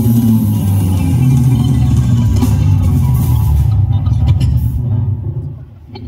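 Live jazz band playing the closing bars of a smooth-jazz tune, with electric bass guitar and drum kit to the fore. The music dies away near the end.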